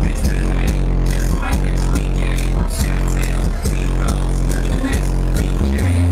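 Electronic dance music played loud over a nightclub sound system, with a heavy held bass line broken by a steady, repeating beat.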